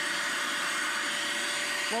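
Hoover Power Path Pro Advanced Carpet Cleaner running with its hand tool on the hose drawn across a carpeted stair: a steady motor rush with a constant high whine.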